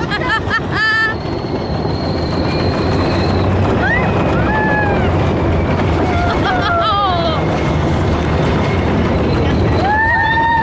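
Wind rushing over an open-top Test Track ride vehicle running at speed on the outdoor track, a steady loud rush with rumble underneath. Riders give a few brief whoops over it.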